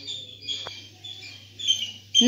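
Faint high-pitched bird chirping in the background over a steady low hum, with one short click a little past half a second in.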